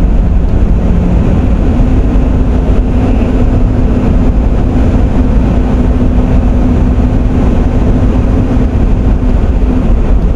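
Car driving noise heard from inside the cabin: a steady road and engine rumble. Over it a faint steady hum steps up in pitch about a second and a half in and fades near the end.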